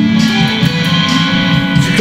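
Guitar being strummed, chords ringing on between the strokes.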